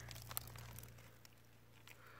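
Faint crunching and a few small clicks of brittle, flaky rock fragments being picked off an outcrop by hand.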